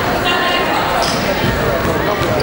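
Basketball being dribbled on a hardwood gym floor during a game, over the steady background chatter of players and spectators in the gym.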